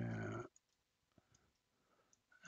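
A man's drawn-out 'uh' in the first half second, then near silence with a few faint, sharp clicks of a computer mouse.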